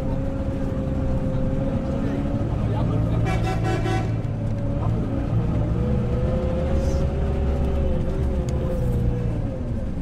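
Heard from inside a moving bus: the engine drones steadily under street traffic. A vehicle horn honks for about a second, around three seconds in.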